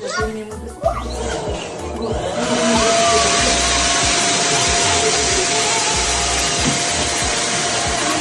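A fan-driven electric motor starts about two seconds in and runs steadily, a loud even rush with a steady whine over it.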